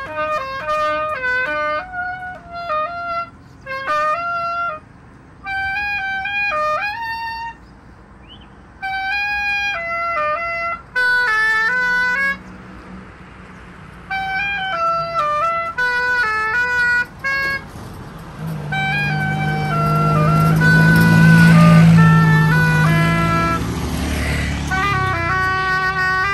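A solo woodwind plays a slow melody in short phrases, with brief gaps between them. In the last few seconds a passing road vehicle adds a low hum that swells and becomes the loudest sound.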